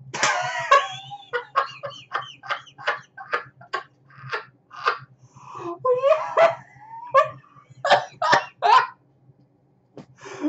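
Man laughing hard in rapid short bursts, with a few drawn-out voiced cries in between.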